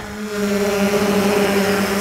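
3DR Solo quadcopter hovering after lift-off: a steady hum from its electric motors and propellers over a broad rushing hiss, easing up slightly in the first half second.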